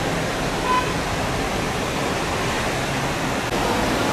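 Steady rushing outdoor ambience, an even hiss-like noise with no clear rhythm or pitch, recorded at a street of shopfronts.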